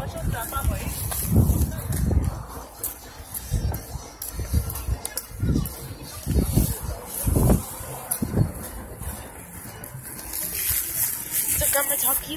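Irregular low rumbling knocks from a phone carried while walking, with voices in the background.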